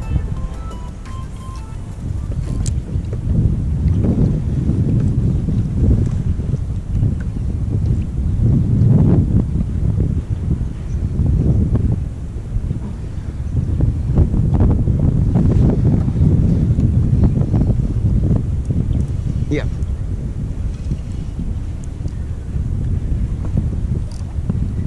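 Wind buffeting an action camera's microphone in rising and falling gusts, a heavy low rumble. Background music fades out in the first second or so.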